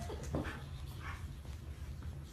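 A dog making a few short, soft sounds while play-fighting with a monkey, over a steady low hum.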